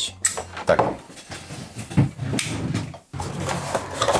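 Handling noise at a desk: cables, plugs and gear being moved and set down, with a sharp knock about two seconds in.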